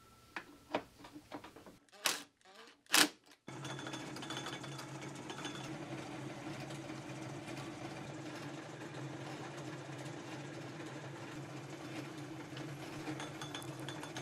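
A few light clicks and two sharp knocks as the workpiece is set up, then from about three and a half seconds in a homemade Gingery metal lathe runs steadily, turning down a steel rod.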